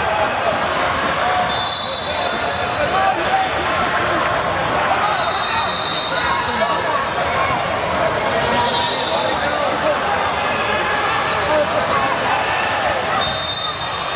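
A basketball being dribbled on a hardwood gym court amid steady chatter of many voices, with a few short high squeaks now and then, typical of sneakers on the floor.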